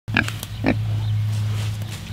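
A grazing pig giving two short grunts near the start, with faint clicks of grass being bitten and chewed, over a steady low hum.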